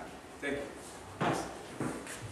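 A man preaching in short bursts, with two sharp knocks about a second apart in the second half.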